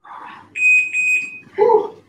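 A single high-pitched electronic beep of just under a second, pulsing slightly, that signals the end of a 30-second exercise interval in a workout circuit. A short breathy sound comes before it and a loud vocal exhale follows it.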